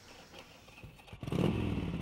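Motorcycle engine running, cutting in abruptly about a second in after a near-quiet start.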